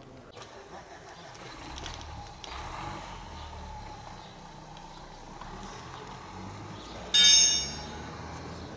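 Low steady vehicle engine rumble, with a brief, loud, high-pitched squeal near the end.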